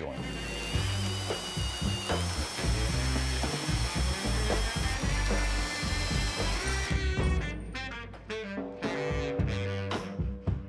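Cordless drill spinning a bi-metal hole saw in a tubing notcher, cutting through the end of a steel tube: a steady motor whine over grinding cutting noise, rising slightly in pitch about two seconds in. The cut stops about seven seconds in, leaving background music.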